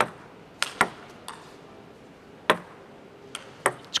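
Table tennis rally: the plastic ball clicking off the players' rubber-faced bats and bouncing on the table, a string of sharp, irregular ticks with the loudest about two and a half seconds in.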